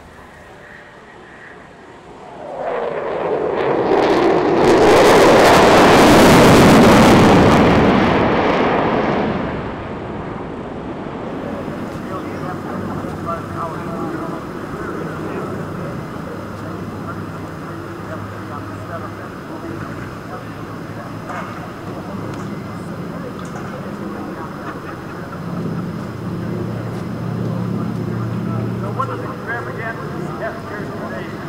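A fighter jet flying past, a loud roar that builds from about two seconds in, peaks and dies away by about ten seconds. After it comes a lower, steady mix of distant aircraft noise and crowd.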